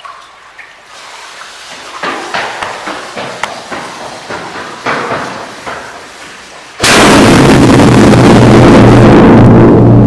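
Irregular crackling for a few seconds, then about seven seconds in a homemade Cobra 6 firecracker goes off with a sudden, very loud blast. The bang overloads the microphone and booms on, echoing in the brick tunnel.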